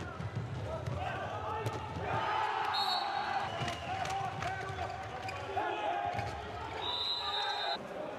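Handball bounced on an indoor court during play, with players and bench shouting throughout. Two brief high squeaks come about three seconds in and again near the end.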